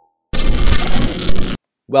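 A loud metallic ringing sound effect, lasting about a second and a quarter, that cuts off abruptly.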